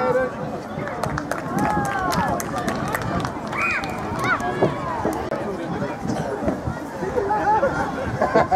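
Sideline spectators' voices: several people talking and calling out at once, overlapping chatter with the odd shout, and scattered sharp clicks.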